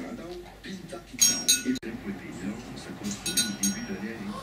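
Two brief bursts of light metallic clinking with a short ringing tone, about two seconds apart, over a faint low murmur.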